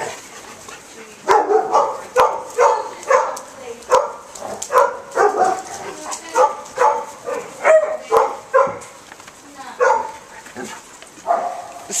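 A dog barking over and over in short sharp barks, about two a second, starting about a second in.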